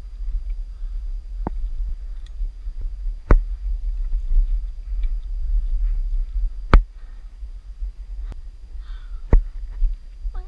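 Low rumble of wind and handling on a body-worn action camera's microphone during a cable climb, broken by about five sharp clicks and knocks as gloved hands grip the steel cable and boots step on granite. The two loudest knocks come about a third and two-thirds of the way through.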